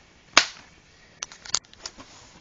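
Plastic DVD case being handled: one sharp snap about a third of a second in, then a few lighter clicks and taps about a second later.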